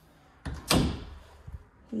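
Interior bathroom door being pushed shut: a light bump about half a second in, then a sharp knock as it closes, and a faint click about a second later.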